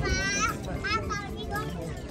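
A child's high-pitched voice calls out, once at the start and again about a second in, over background chatter from people around.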